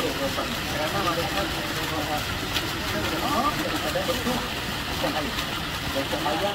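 A park fountain jet splashing into its pool, a steady rush of water, with people's voices chattering in the background.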